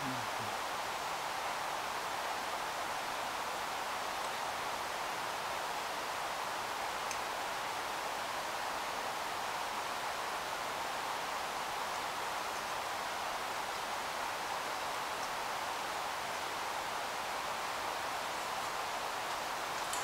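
Steady, even hiss of background noise, with no distinct handling or tool sounds apart from one faint tick about seven seconds in.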